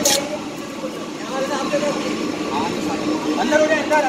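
Indistinct men's voices talking over a steady low mechanical hum, with a sharp click right at the start.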